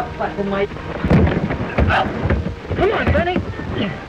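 A scuffle among several people: heavy thumps and knocks about a second in, near two seconds and just after three seconds, mixed with shouts and grunts, over the hiss of an old film soundtrack.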